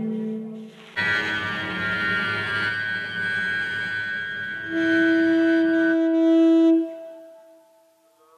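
A saxophone playing long held notes, joined by machine-generated cello phrases that Dicy2 assembles from a pre-recorded cello corpus. An earlier note dies away in the first second. New sustained notes enter about a second in, and a strong held note from about five seconds in fades out near the end.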